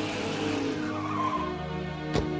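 Engine of an old off-road vehicle running, heard from inside the cabin, its note dropping about a second and a half in.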